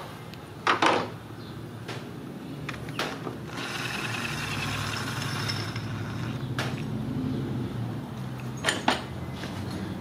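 Tools working on the camshaft gear bolts of a 1.8 Ecotec engine: a few sharp metallic clicks and clinks, and from about three and a half seconds in a power tool runs with a steady whir for about two and a half seconds.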